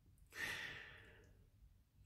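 A person's soft sigh, a breath out that starts about a third of a second in and fades away over about a second.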